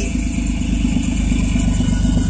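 Minivan engine idling, with a steady, low, pulsing exhaust rumble from a muffler that has a hole in it.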